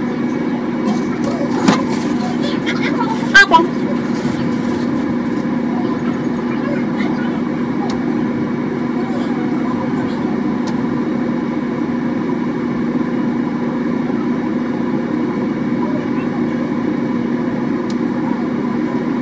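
A steady low mechanical hum, with two sharp knocks near the start, the second about three and a half seconds in and the loudest.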